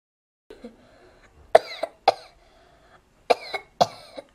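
A person coughing in two bouts of three short coughs each: the first bout about a second and a half in, the second near the end.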